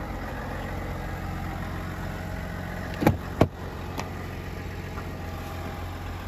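2021 GMC Sierra's Duramax turbodiesel idling steadily after a remote start. About three seconds in come two sharp clicks close together and a lighter one a moment later, fitting the driver's door being unlatched and opened.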